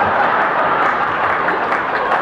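A large audience laughing and clapping together, a dense wash of crowd noise.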